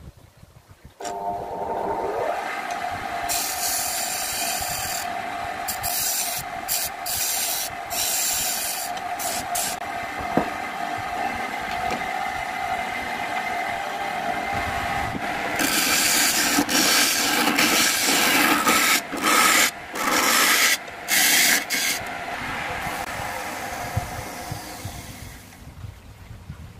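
Wood lathe motor starting about a second in, its whine rising as it spins up, then a turning tool scraping a spinning dry bamboo cup blank in repeated on-off cuts, loudest in the second half. The sound dies away near the end as the lathe stops.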